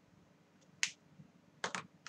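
A few short, sharp clicks: one a little under a second in, then a quick pair near the end, in an otherwise quiet room.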